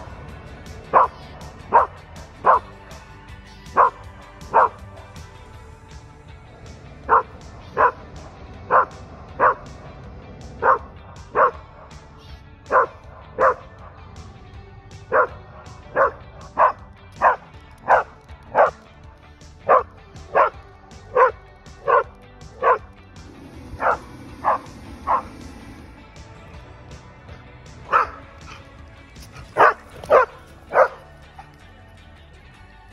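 A Standard Schnauzer barking at a hot air balloon overhead: about thirty single sharp barks, most under a second apart, in runs broken by short pauses. Background music plays underneath.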